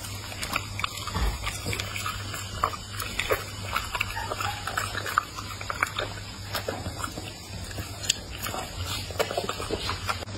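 A pit bull-type dog chewing food and smacking its lips: a steady run of irregular short clicks and smacks.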